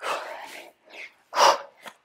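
A woman breathing hard from exertion. One long exhale comes at the start and a second, sharper one just past halfway.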